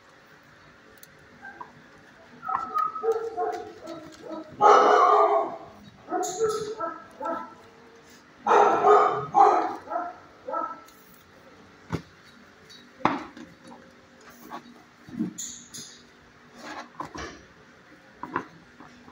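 Dogs barking in irregular bursts in a shelter kennel, the loudest barks about five and nine seconds in.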